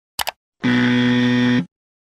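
Sound effect of a quick double mouse click, followed by a flat, buzzing error tone that lasts about a second and cuts off suddenly.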